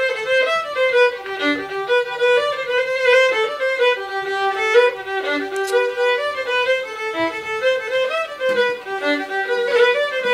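A solo fiddle playing a quick traditional tune: a fast run of bowed notes, with a sustained lower note held under the melody around the middle.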